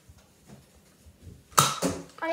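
Two short, sharp puffs close together near the end: a Nerf blaster being fired.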